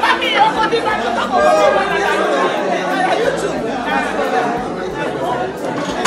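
Several people talking at once in a large room, overlapping chatter of voices.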